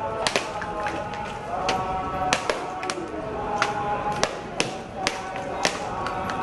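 Coconuts being smashed one after another on a hard stone floor: about ten sharp cracks at irregular intervals.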